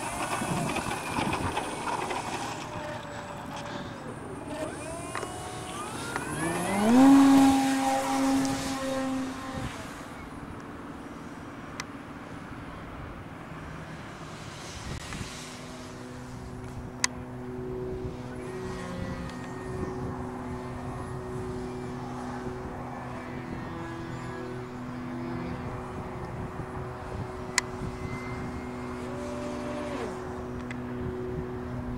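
Electric motor and propeller of a radio-controlled PA Extra MX aerobatic model plane: a whine that rises in pitch as it is throttled up about seven seconds in, the loudest moment, then a steady hum as it flies. Two short clicks come later.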